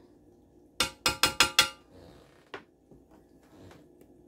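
Kitchenware clinking: five quick ringing taps, like a utensil knocked against a dish, about a second in, then a single lighter click.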